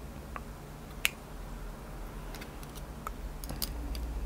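A few small, sharp metallic clicks as the padlock's brass plug and its retaining C-clip are handled and worked at, the sharpest about a second in.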